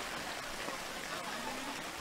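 Steady rain falling on a waterlogged artificial-turf pitch, an even hiss. A faint voice is heard briefly late on.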